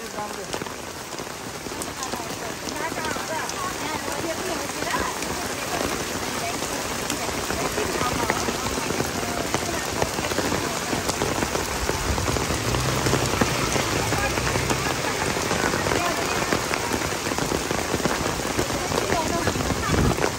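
Heavy rain pouring onto wet paving, a dense, steady wash of falling water.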